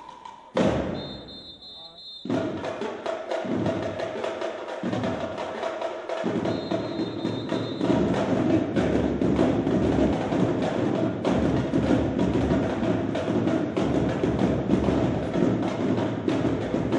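Marching drumline snare and bass drums playing a fast cadence for a drill team, getting louder from about halfway. A sharp hit about half a second in is followed by a short high steady tone, which sounds again a little before halfway.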